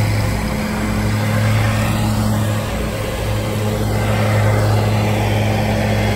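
An engine running steadily at constant speed, a low even hum over a haze of noise.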